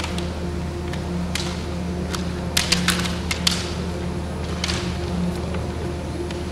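Bamboo shinai clacking together in a kendo bout: a few single sharp clacks, with a quick flurry of about five strikes just past halfway, over a steady low hum.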